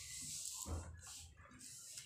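Sheet of paper being folded and smoothed flat by hand on a stone floor, giving faint rustling and sliding, with a soft thump about two-thirds of a second in.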